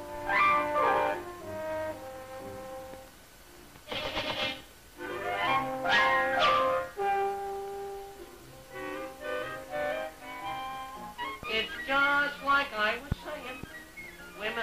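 Brass-led orchestral cartoon score playing a lively passage with sliding phrases, broken by short harsh sound effects about four and six seconds in.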